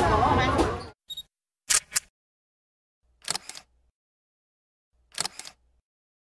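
Public-space chatter that cuts off abruptly about a second in, followed by four camera shutter clicks, most of them quick double clicks, about every one and a half to two seconds over dead silence.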